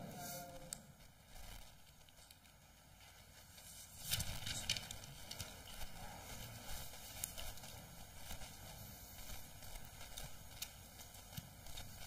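Faint handling noise at a wooden lectern: papers and a book shuffled and set down, giving small irregular knocks and rustles into the lectern microphone from about four seconds in.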